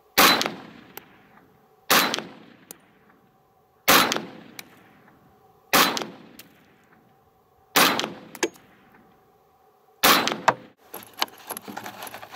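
Inland Manufacturing M1 Carbine, a semi-automatic .30 Carbine rifle, fired six single shots about two seconds apart, each sharp report trailing off in a long echo. Light metallic clinking follows near the end.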